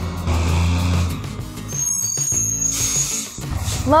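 Cartoon truck engine sound effect, a low steady hum that cuts off about a second in, under background music; higher tones and a brief hiss follow.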